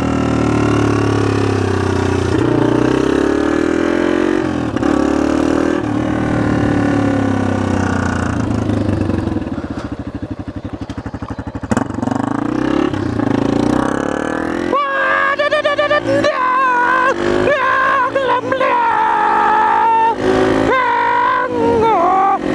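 Motorcycle engine heard from the rider's seat while riding, its pitch rising and dropping in steps as it accelerates and shifts. It eases off and runs lower around the middle, then pulls to a higher, wavering pitch again in the second half.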